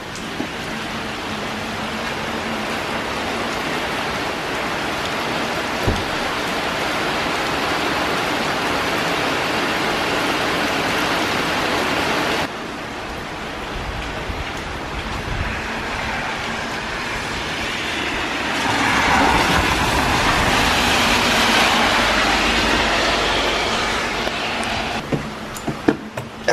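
Heavy rain and wind outside an open door at night: a steady, loud hiss. Wind rumbles on the microphone in the second half, and the hiss swells louder for a few seconds near the end.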